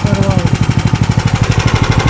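Engine of a Koira motorized tow-dog (tracked snow tow machine) idling with a quick, even beat. Its drive chain has broken, so it is running but not driving.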